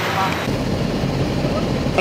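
Steady low rumble of engine and road noise inside a moving tour coach, starting abruptly about half a second in after a few trailing words.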